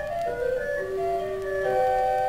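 Hildebrandt pipe organ playing from a vinyl record: a melody steps downward in clear, pure pipe tones, then new notes enter and are held as a sustained chord near the end.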